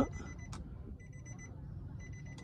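Faint high electronic beeping, sounding in runs about half a second to a second long with short gaps between them: a car's interior warning chime.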